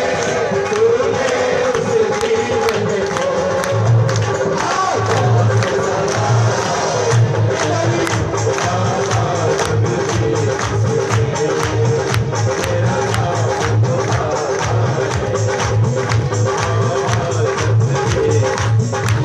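Live devotional bhajan music with a steady percussion beat, low drum pulses and a wavering melody line, played loud in a crowded hall.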